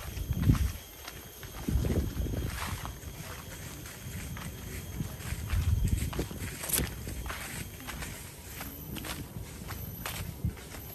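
Footsteps of a person walking along a trail, with thuds about every second or so and light scuffs and clicks underfoot, one of them sharper about two-thirds of the way in.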